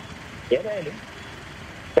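A brief spoken word, then about a second of steady low road-traffic noise before speech resumes.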